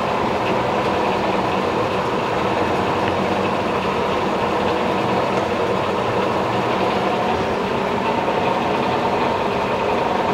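Bridgeport Series II heavy-duty vertical mill running under power: a steady, unbroken whir from its motor and drive, with a faint steady whine.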